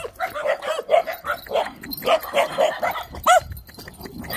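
Small dogs barking rapidly and repeatedly, a pack barking in alarm and aggression at another dog, with one higher rising-and-falling yelp a little after three seconds in.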